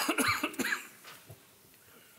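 A person coughing, a short run of coughs in the first second, followed by quiet room tone.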